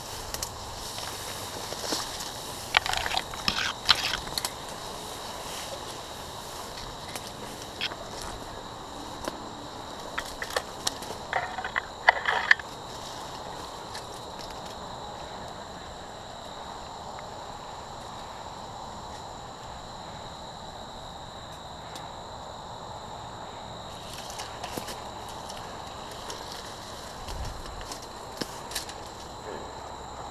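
Footsteps and the crackle of dry grass and brittle brush crushed underfoot and brushing against a player pushing through thicket, in two short bursts of snapping about three seconds in and again around twelve seconds, with scattered single cracks between. A steady high insect drone runs underneath.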